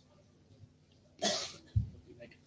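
A single short cough about a second in, followed by a brief low thump just before the end.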